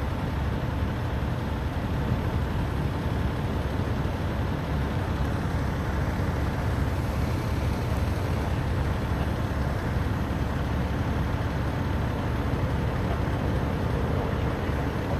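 Road traffic: cars and SUVs passing on a multi-lane road, a steady low rumble with no distinct events.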